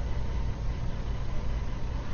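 A steady low background hum and rumble with a faint hiss above it.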